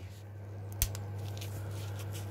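A gloved hand handling and rubbing a turned resin-and-beech blank on a lathe, with one sharp tap a little under a second in, over a steady low hum.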